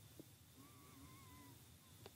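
Near silence: room tone, with a faint wavering high tone for about a second in the middle.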